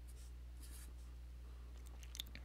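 Marker writing on paper: a few faint, short scratching strokes, over a low steady hum.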